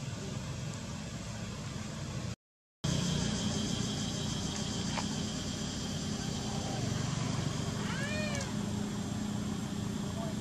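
Baby macaque crying: one short, high call that rises and falls, about eight seconds in, with a fainter call a couple of seconds before. A steady low hum and a high buzz run underneath, and the sound cuts out briefly a couple of seconds in.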